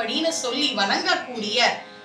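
A woman speaking, her voice stopping shortly before the end.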